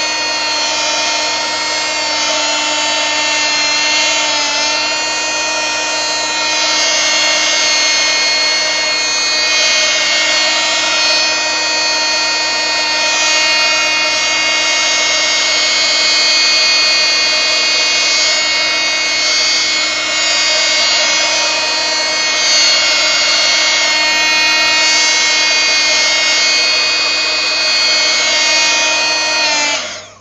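Handheld heat gun running with a steady fan-motor whine, drying a freshly poured layer of acrylic paint. It is switched off at the very end, its whine dropping briefly in pitch as it winds down.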